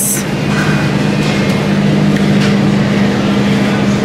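Steady low mechanical hum with a hiss of noise from a grocery store's refrigerated display cases, with a brief high hiss right at the start.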